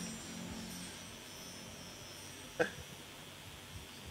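Faint room tone of a large hall in a lull, with the last of the music dying away in the first half second and one short voice-like blip about two-thirds of the way through.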